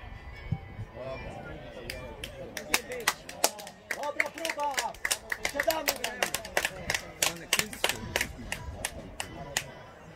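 Hand clapping: a run of quick, irregular sharp claps starting about two seconds in and stopping near the end, with voices calling out over it.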